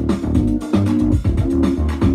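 DJ-mixed dance music played from Pioneer CDJ decks and mixer: a steady beat with a repeating bass line and melody.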